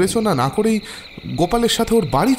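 A man speaking Bengali over a steady chorus of crickets chirping, with a short pause in the voice about a second in.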